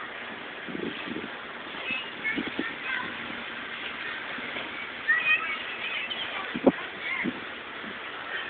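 A few dull thumps and knocks as a large tractor tire is pushed and handled on grass, with one sharper knock about two-thirds of the way through, over a faint outdoor background.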